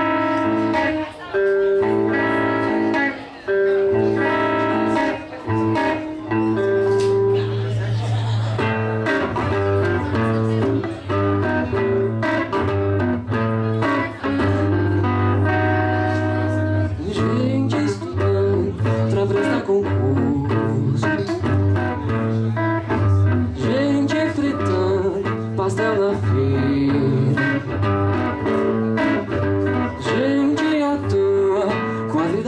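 Electric guitar playing a song's instrumental opening: a moving line of picked notes over held low bass notes.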